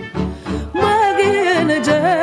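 Romanian folk song: band accompaniment with a steady beat, then a woman's voice comes in about a second in, singing a held line with a wide, wavering vibrato.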